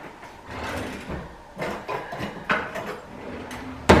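Kitchen drawer sliding and utensils clattering as someone searches for a knife, ending with a sharp knock of the drawer being shut near the end.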